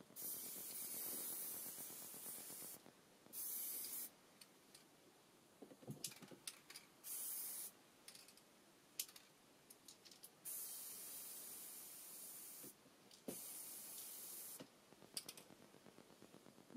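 Aerosol can of stove-black spray paint hissing in about five bursts, the longest about two seconds, with short clicks and knocks between the sprays.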